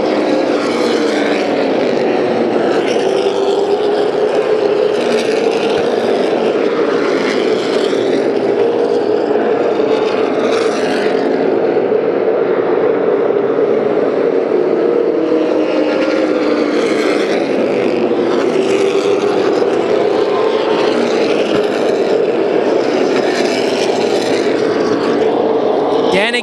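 A pack of Super Late Model stock cars racing, their V8 engines running hard in a loud, continuous drone whose pitch wavers up and down as the field circulates.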